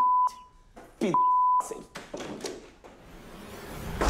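Steady 1 kHz censor bleeps covering a man's shouted swearing: a short bleep at the start and a longer one about a second in, between bursts of his voice. Near the end a hissing noise swells.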